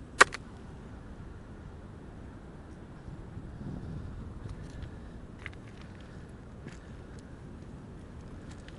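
A single sharp clack of stone striking stone, about a quarter second in, as a hand-held rock is set down among beach boulders and pebbles. It is followed by a few faint clicks of pebbles shifting, over a steady low background rumble.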